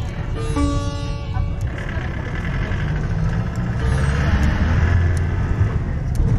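Sitar music that fades out after about a second and a half, leaving the steady rumble of a vehicle driving on a rough unpaved road.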